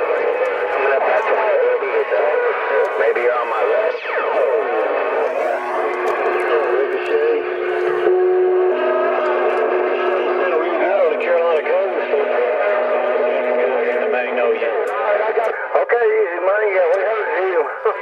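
Stryker SR955HPC CB radio receiving distant skip stations through its speaker: garbled voices talking over one another with heterodyne whistles and squeals. A falling whistle comes about four seconds in, and a steady low tone runs through the middle.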